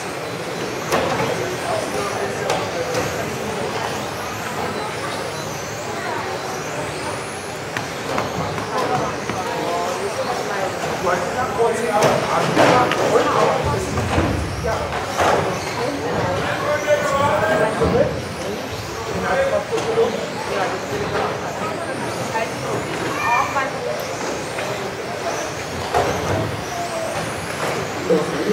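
Several radio-controlled touring cars racing together, their motors making high whines that rise and fall in pitch as the cars accelerate and brake around the track.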